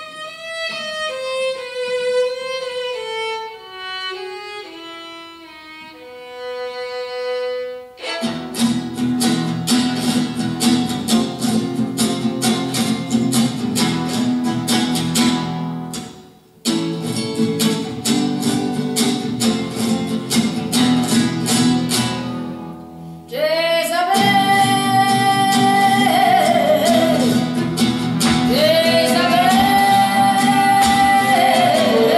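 Live violin and acoustic guitar: the violin plays a descending solo introduction, then the guitar comes in strumming chords in a Spanish rhythm about eight seconds in, stopping briefly near the middle. About three-quarters of the way through, a singer enters over the guitar with a held, wavering voice.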